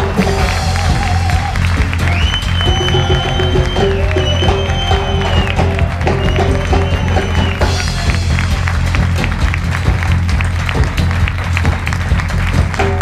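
Big band playing a steady vamp with a bass and drum groove while the audience applauds. A high held melodic line comes in about two seconds in and drops out near eight seconds, and the clapping and drum hits are denser after that.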